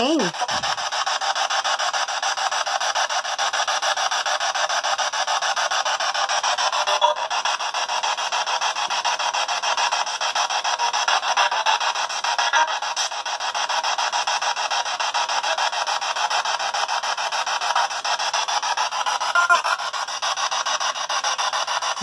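P-SB7 Spirit Box sweeping through radio stations: a steady hiss of static, rapidly chopped as it jumps from channel to channel.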